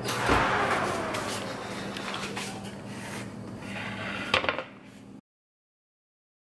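Oven door pulled open with a thump and a rush of noise that fades over about a second, then a sharp knock a little over four seconds in. The sound cuts out suddenly about five seconds in.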